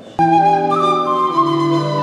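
A small wind ensemble led by saxophones playing slow, held chords, cutting in abruptly a fraction of a second in.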